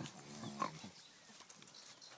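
A pig grunting once, faintly, a drawn-out pitched grunt of under a second near the start.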